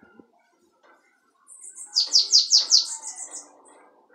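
Caged bananaquit (sibite) singing a short, high song: a quick run of about seven descending notes starting about a second and a half in and fading out a second or two later.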